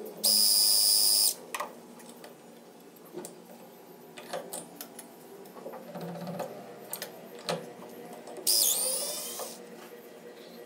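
Cordless drill running for about a second with a steady high-pitched whine, followed by light clicks and taps of metal tools at a hand press. Near the end comes a second brief, loud high sound whose pitch falls away.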